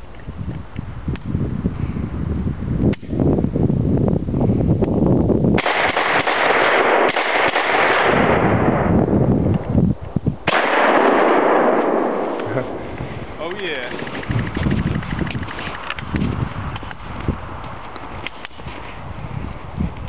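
Gunshots from an SKS rifle and a Remington 870 12-gauge shotgun: sudden shots about three, five and a half and ten and a half seconds in, the last two each followed by several seconds of loud rushing noise.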